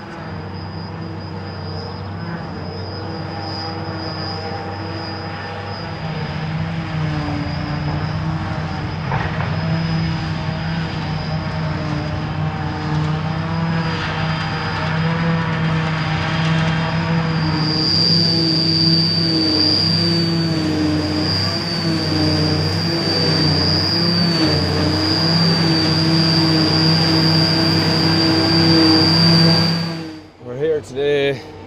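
Fendt 820 tractor driving a JF 1100 trailed forage harvester chopping grass, with a John Deere 7310R tractor running alongside: a steady engine drone under a high steady whine from the harvester. It grows louder, the whine strongest over the last third.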